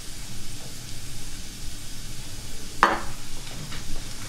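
Steady sizzle of food frying in pans on the stove, with one sharp clink a little under three seconds in.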